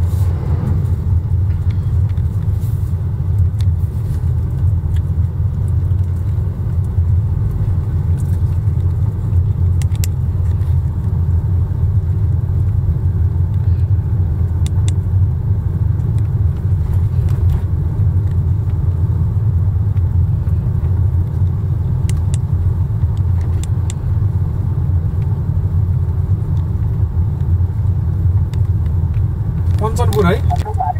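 Steady low rumble of a car's engine and tyres heard from inside the cabin while driving, with a few faint clicks.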